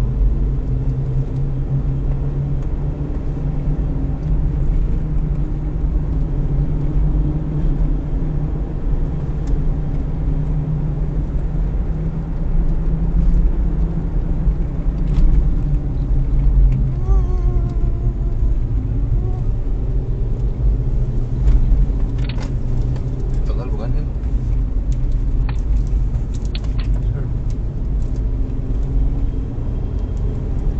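Steady engine and road noise inside a Toyota Rush's cabin as it drives along at speed, with a few short sharp knocks and rattles between about 22 and 27 seconds in.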